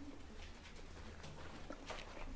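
Faint room tone with a steady low hum, and a soft rustle of paper near the end as Bible pages are turned.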